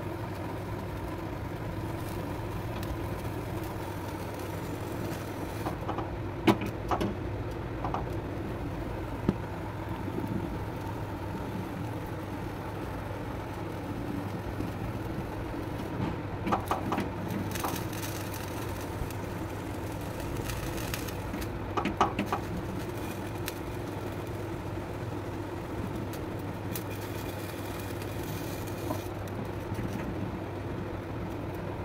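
Eggplant and tomatoes charring directly over a gas stove flame on a wire grill rack: a steady hum, with scattered clicks and crackles from the vegetables being turned on the metal rack. The clicks come in small clusters, about six to nine seconds in, around sixteen to eighteen seconds, and again around twenty-two seconds.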